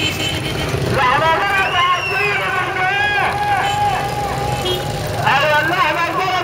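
Street sounds: a voice that rises and falls with its pitch, in two stretches separated by a short break, over a steady low traffic rumble.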